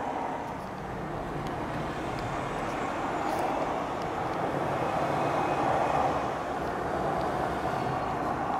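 Steady rushing noise of distant town traffic, slowly swelling a little toward the latter part.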